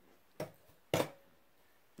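Two sharp clicks from the folding shovel's metal handle sections as they are handled, about half a second apart, the second louder with a brief metallic ring.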